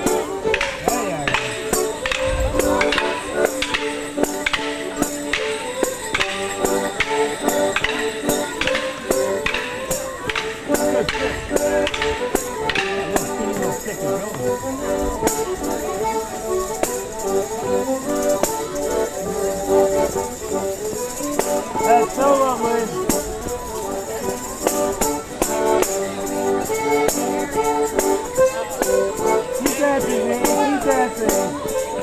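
Live folk tune for a Border Morris dance, with sharp knocks landing evenly on the beat for roughly the first half, then a steady jingling rattle over the tune.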